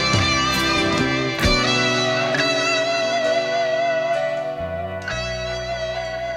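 Rock recording, instrumental passage: a lead electric guitar holds one long note with a wavering vibrato over the band's backing.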